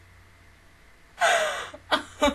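A woman's loud, breathy gasp about a second in, falling in pitch, followed by a second short breath at the end.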